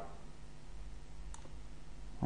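Low steady hum of room tone with a single faint click about a second and a half in.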